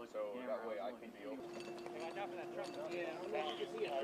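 Ground crew talking indistinctly on the flight line, with a steady hum that comes in about a second and a half in.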